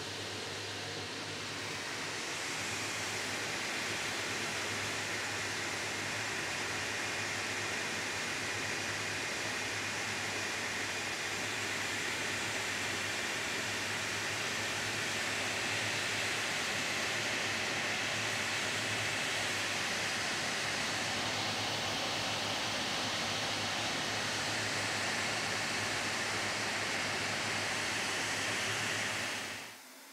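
Gas-fired steam boiler burner running at full fire: a steady, pretty loud noise with a low hum underneath. It cuts off abruptly near the end.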